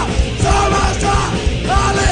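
Hardcore punk band playing live, with shouted vocals over guitar, bass and drums.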